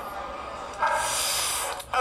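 A man's breathy exhale right at the microphone, about a second long, starting a little before the middle.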